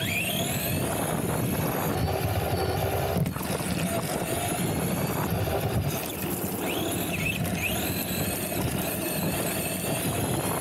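Arrma Vorteks RC truck driving on rough asphalt: its brushed electric motor and drivetrain whine, rising in pitch with throttle at the start and twice near the end, over a steady rumble of tyres on the road.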